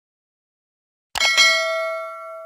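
Notification-bell ding sound effect: a quick clattering strike about a second in, then a bright ring of several pitches fading away.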